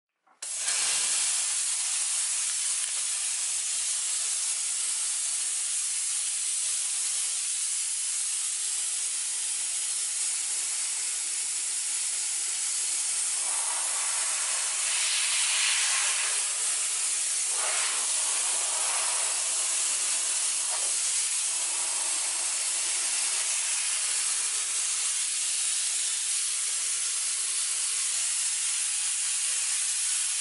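Monster steam cleaner's handheld nozzle jetting steam onto a plastic dog potty tray grate: a steady, loud hiss that starts abruptly about half a second in. It has a few brief brighter swells midway as the jet moves over the tray.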